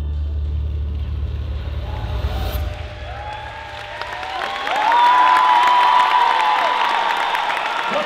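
A low held bass note from the show's music fades out over the first few seconds. About four and a half seconds in, the arena audience breaks into loud cheering and whooping.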